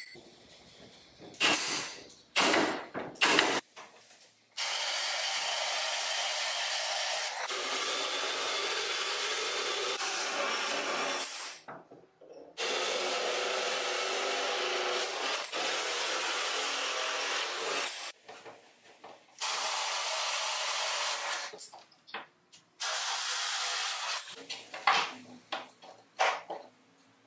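Milwaukee M18 cordless drill driving a hole saw through plywood, guided by a homemade hole saw guide, in four steady cutting runs of falling length with short pauses between. A few sharp clicks come in the first few seconds, before the drilling.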